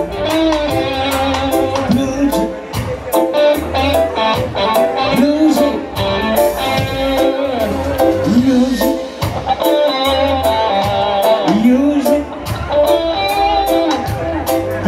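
Live reggae band playing an instrumental passage: a steady drum beat and bass line under an electric guitar playing bluesy lead lines with bent notes.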